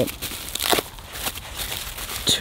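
Plastic shrink-wrap crinkling as it is torn and peeled off a booster box of trading cards, in a run of small sharp crackles with a louder rustle just under a second in.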